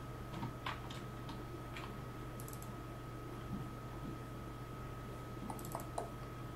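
Computer mouse clicking a few times, some clicks in quick pairs, as folders are opened, over a faint steady electrical hum.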